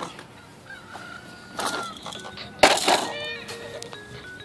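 A toddler with a plastic push-walker toy on asphalt: a sudden clatter about two and a half seconds in, then a brief high squeal, over faint steady electronic tones.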